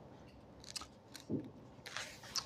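Faint paper handling: a few soft rustles and small clicks as paper is moved in the hands.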